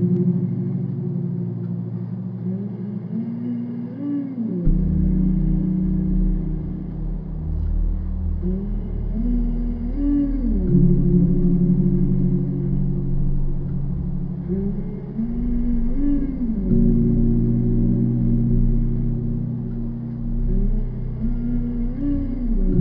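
Slowed dark ambient music: sustained low tones with sliding notes that swell about every six seconds, and a deep bass layer that comes in about five seconds in.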